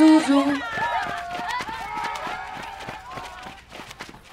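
A last sung note ends just after the start. A crowd shouts and calls as it runs off, with many running footsteps, all fading steadily into the distance.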